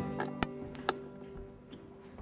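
Acoustic guitar notes ringing on and fading away, with four sharp ticks in the first second.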